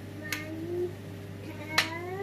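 Two sharp clicks of small ceramic spice pots being handled over a pan on the hob, the second one louder and near the end, over a faint steady low hum.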